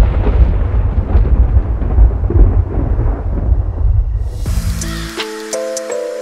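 A loud thunder-like rumble that fades away over about five seconds. Music with held notes stepping in pitch comes in near the end.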